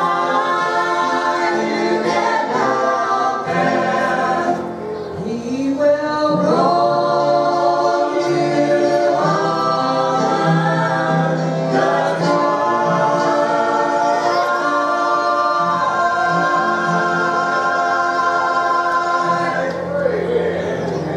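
Mixed gospel quartet, two men and two women, singing in harmony into microphones, with long held notes. The singing drops briefly about five seconds in, and the song ends on a long held chord near the end.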